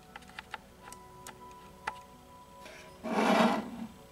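Soft meditation music with steady held tones and a few light clicks, then about three seconds in a short, rough scrape, the loudest sound: a ceramic bowl of water slid across a tabletop.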